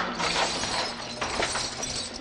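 Something brittle shattering and clattering, a run of sharp crashes and clinks over about a second and a half.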